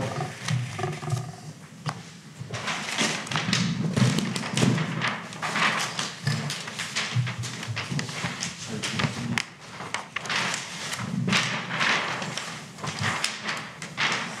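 Large paper plan sheets rustling and crinkling as they are lifted and flipped over on an easel, picked up close by a handheld microphone.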